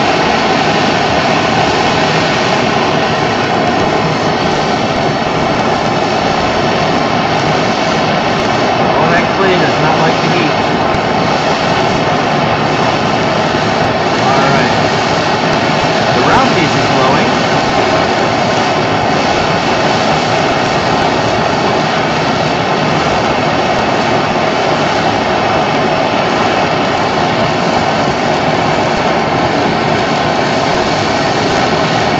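Hand-held gas brazing torch burning steadily, a loud constant rush of flame, as it heats a workpiece in a firebrick jig up to brazing temperature.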